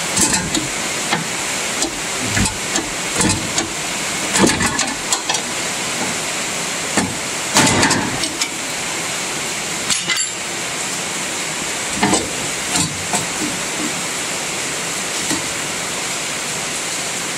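Irregular metallic knocks and clinks of hand tools and a steel rod against the steel frame of a combine header, over a steady hiss.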